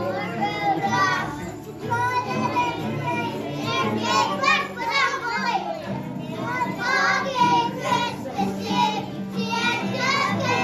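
A group of young children singing together over accompanying music.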